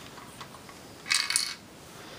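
Hard plastic LEGO parts clicking and clinking together as the model is handled: a brief cluster of clinks about a second in, over faint room hiss.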